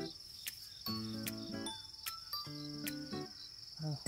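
Crickets chirping in a steady, fast-pulsing high trill, under soft background music of held melodic notes, with a few light clicks.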